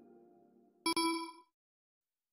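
Background music fading out, then a single short bell-like ding a little under a second in that rings for about half a second and dies away.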